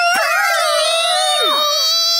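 Several high-pitched cartoon character voices crying out together in one long, drawn-out shocked wail; one voice slides down in pitch near the end.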